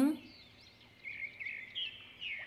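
A bird chirping in a quick string of short, sliding notes, starting about a second in.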